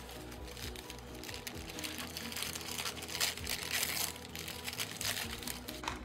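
Paper wrapping around a plant cutting rustling and crinkling as it is handled and unwrapped, with faint music underneath.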